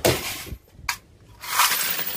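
A hammer blow crushing a tin money box, followed by a short sharp metallic click about a second in and a longer loud noise near the end.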